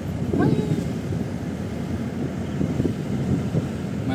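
Steady low rumble of a moving road vehicle heard from inside its cabin.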